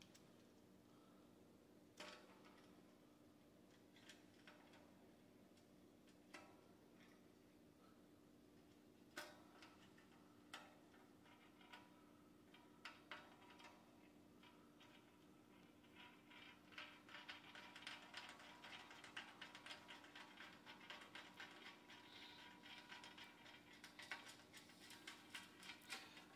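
Faint, scattered metallic clicks of a bolt and washer being handled and turned in by hand on a steel TV-stand bracket, turning into a quicker run of small ticks and rattles about two-thirds of the way through, over a faint steady hum.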